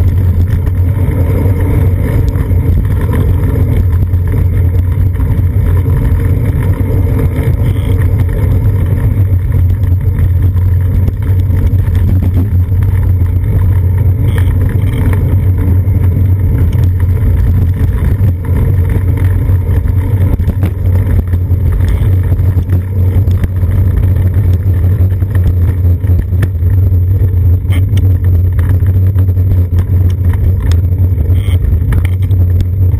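Steady low rumble of wind buffeting and road vibration picked up by a seat-post-mounted GoPro in its housing on a bicycle riding through city traffic.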